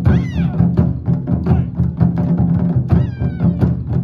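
Japanese taiko drums struck in a steady, fast rhythm of about four beats a second. Two short, high, gliding cries ring out over the drumming, one at the very start and one about three seconds in.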